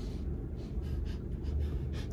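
Quiet breathing and faint rustling over a steady low hum in a car cabin.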